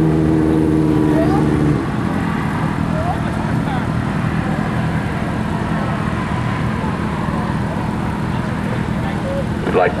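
A vehicle engine idling steadily, cutting off suddenly about two seconds in, followed by steady background noise of the track with faint distant voices.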